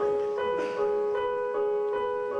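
Stage keyboard playing a slow melody in an electric-piano or piano voice, held notes changing about every half second, at the start of a song.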